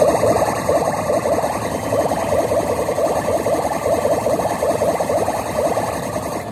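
Electronic music and effect sounds from a Kabaneri of the Iron Fortress pachislot machine during its rapid button-press (連打) effect, a busy fast-warbling tune.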